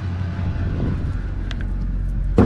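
Pickup truck engine idling steadily, with a single short click about one and a half seconds in.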